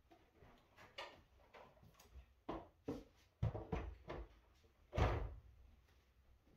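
Scattered light knocks and clunks, the loudest about three and a half and five seconds in.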